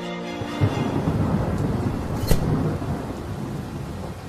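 Low, steady rumbling noise with a hiss over it, like a storm sound effect, with one sharp crack a little past the halfway point. Music fades out in the first half second.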